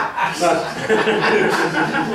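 A man chuckling and laughing in short, continuous bursts of voice.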